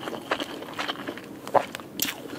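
Close-miked chewing of a mouthful of grilled tilapia and fresh greens: irregular wet mouth clicks and crackles, several a second, with one louder smack about one and a half seconds in.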